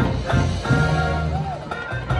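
Marching band playing, the full ensemble coming in loud at the start and holding low sustained chords.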